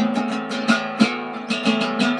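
Guitar strummed in an even rhythm, about three strums a second, its chords ringing on between strokes.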